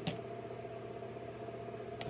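Steady low electrical hum of room tone, with one faint click at the very start.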